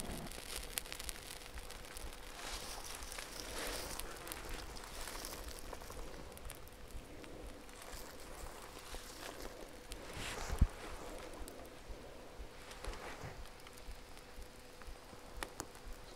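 Faint crackling of the surrounding vegetation igniting from the heat of molten aluminum poured into the ground: a light hiss with many small scattered pops, and one sharper knock about ten seconds in.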